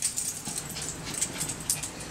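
Small dogs moving about on the floor: quick, irregular light clicks and soft padding of their feet.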